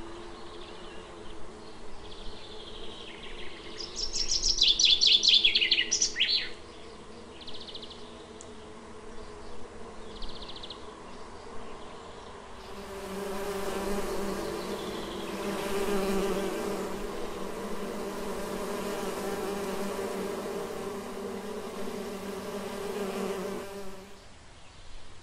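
Bees buzzing close to the microphone: a steady hum that grows louder and fuller about halfway through as a bee comes near, and cuts off sharply near the end. About four seconds in, a loud chirping trill falls in pitch for a couple of seconds.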